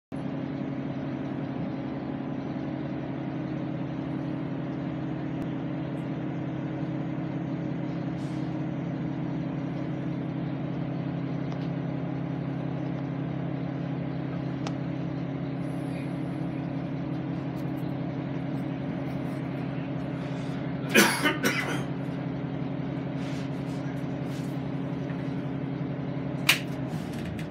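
A transit bus's engine idling with a steady low hum, heard from inside at the front of the bus. A short cluster of sharp noises breaks in about twenty seconds in.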